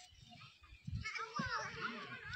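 Several children's voices chattering and calling at once, starting about a second in, with low thumps underneath.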